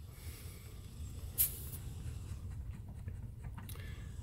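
Quiet handling of a brass valve core removal tool by leather-gloved hands as its valve is turned and the core is drawn out: faint rubbing, with one brief hiss about a second and a half in, over a low steady rumble.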